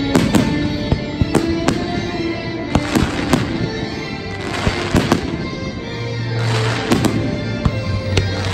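Aerial firework shells bursting in quick succession, a dozen or so sharp bangs, several followed by fizzing crackle from glitter stars. Loud show music with held notes plays under the bursts.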